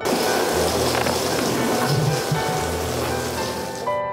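Water spraying and splashing in a steady hiss that starts and stops abruptly, with soft piano music underneath.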